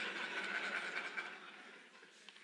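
Audience laughing quietly at a joke, the laughter fading away over the second half.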